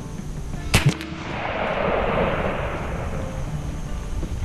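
AEA Zeus .72 caliber big-bore PCP air rifle firing one shot: a sharp crack about three-quarters of a second in, a second short crack right after it, then a rushing noise that swells and fades over the next couple of seconds.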